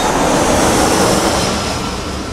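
Jet airliner flyby: a loud rushing noise that swells to a peak about a second in and then starts to fade.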